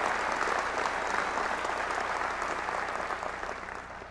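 A large audience applauding, dense clapping that gradually dies away toward the end.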